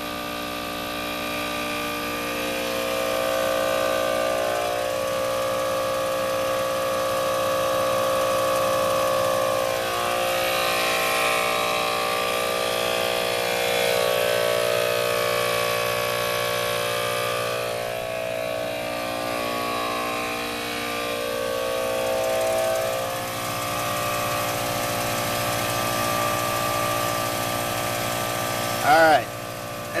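ARB CKMTA12 12-volt twin-motor air compressor running steadily, pumping up a 285/75R16 tire from about 10 psi. A voice comes in at the very end.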